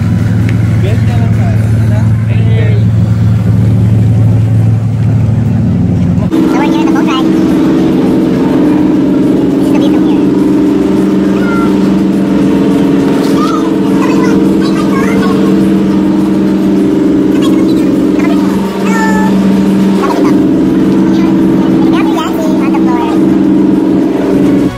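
Steady drone of a passenger ferry's engines with faint voices. The drone changes abruptly to a higher pitch about six seconds in.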